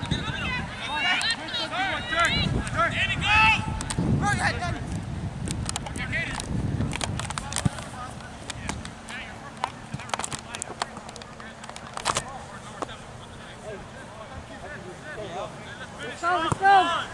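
Raised voices of soccer players and spectators shouting and calling across the field in the first few seconds, over a low rumble of wind on the microphone. The second half is quieter, with scattered sharp knocks.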